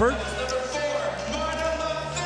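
Indoor volleyball arena between rallies: music playing over the PA with crowd voices, and a volleyball bouncing on the court floor.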